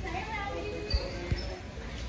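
Indistinct voices in the background, with two dull thumps a little under half a second apart about a second in.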